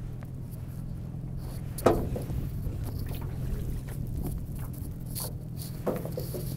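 Small boat's outboard motor idling steadily in neutral, with a sharp knock about two seconds in and a smaller one near the end.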